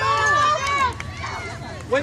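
Spectators shouting from the sideline of an outdoor soccer game: loud voices in the first second, then a quieter stretch before another shout starts near the end.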